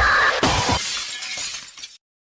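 A sudden crash with a long, fading, hissing tail, as the dance music ends.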